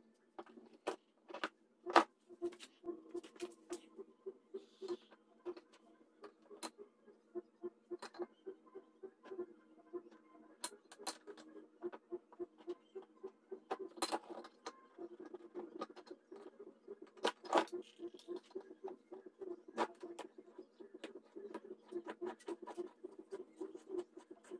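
Floor jack hydraulic cylinder and ram handled by hand over a plastic oil drain pan: irregular light clicks, taps and scrapes of metal parts, with a sharper knock about two seconds in and others later on.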